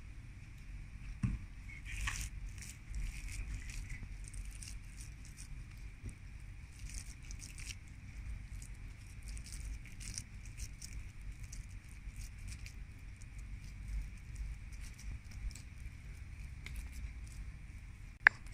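Hands pressing and patting a moist shredded-chicken, vegetable and mashed-potato kebab mixture into patties over a steel bowl: soft, irregular squishing and patting with faint scattered clicks, over a low rumble.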